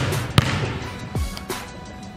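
Basketball bouncing on a hardwood gym floor, a few separate bounces, with background music underneath.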